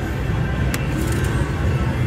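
Steady low rumble of casino floor noise with music in the background. A single sharp click comes about three-quarters of a second in, followed by a few faint ticks.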